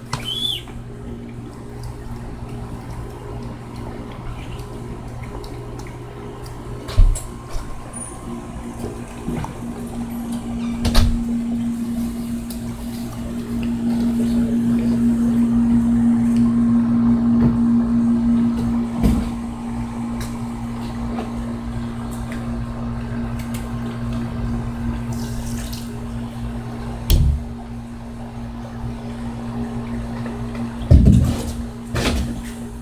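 A steady mechanical hum, held on one pitch, that grows louder for several seconds in the middle, with a few sharp knocks now and then.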